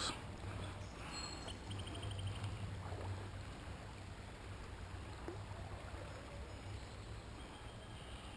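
Faint, steady rush of a shallow creek running over rocks.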